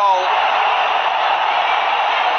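Stadium crowd cheering steadily in celebration of a goal just scored.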